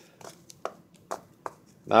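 A few short, light clicks and ticks from a clear plastic bag of baseball cards being handled.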